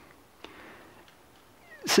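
A pause in a man's talk: faint room hiss with a single small click about half a second in. His voice resumes near the end.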